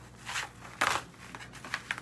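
Tinsel being pulled and torn off a spider-web decoration's frame by hand: two short crinkling, tearing rustles about half a second apart, then a few small crackles.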